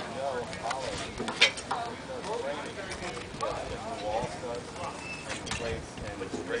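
Background voices of several people talking, not close to the microphone, with a few scattered clicks; the sharpest click comes about one and a half seconds in.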